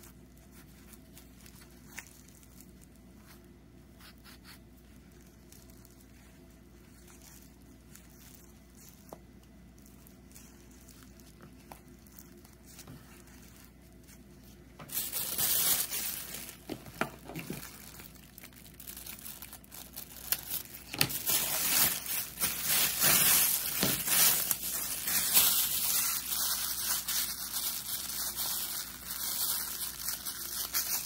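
Faint handling for about the first half, then plastic bag strips crinkling and rustling loudly in irregular surges as they are stuffed into a small loom-knit yarn ball.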